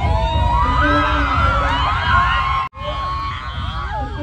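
Live drill rap blasting from a club sound system, with heavy pulsing bass and many voices shouting and rapping along over it. The sound cuts out for a moment about two-thirds of the way through, then resumes.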